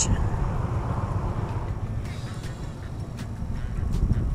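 Road traffic crossing a highway bridge overhead, a steady low rumble, with a few faint clicks in the second half.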